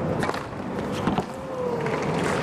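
Tennis stadium crowd murmur, with a couple of sharp knocks of a tennis ball on racquet or court, one just after the start and one just past the middle.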